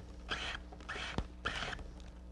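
Quarter-inch flat reed weaver being pulled through a basket's weaving: three short rasping swishes, with a sharp click just after one second in.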